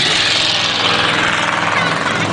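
Pickup truck engine running steadily as the truck drives past close by on the dirt track.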